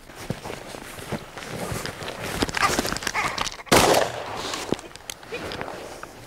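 Footsteps rustling through grass and brush, then a single loud shotgun report a little past halfway. It is the report of two hunters firing at a flushed ptarmigan at the same instant, so the two shots sound as one.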